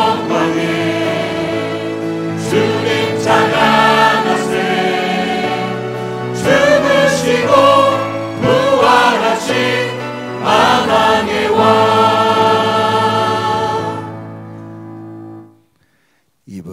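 A choir and praise team sing a Korean worship song in unison over instrumental accompaniment. The song ends on a held final chord that fades out and stops just before the end.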